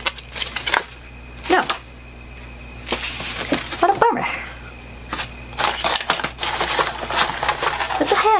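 Paper insert cards and packaging being handled: scattered light rustles and taps, busiest near the start and again over the last couple of seconds.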